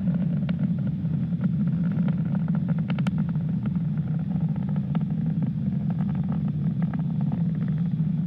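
Falcon 9 first stage's nine Merlin 1D engines during ascent, heard as a steady low rumble with scattered faint crackles.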